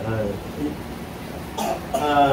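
A short spoken 'uh', then a brief cough near the end.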